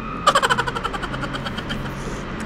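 An engine: a rapid, even train of knocks with a whine, loudest about a quarter second in and fading over the next second and a half, over a steady low hum.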